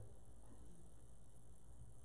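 Quiet room tone with a faint steady low hum, a pause between spoken sentences.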